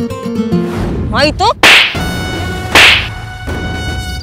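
Two sharp whip-crack sound effects about a second apart, used as dramatic stings over steady background music.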